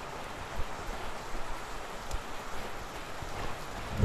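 Steady rushing wind noise on the microphone outdoors, with a few soft low thumps.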